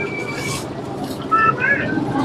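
Street traffic noise, with a vehicle horn's steady high tone that cuts off about half a second in and a short burst of a voice in the background about one and a half seconds in.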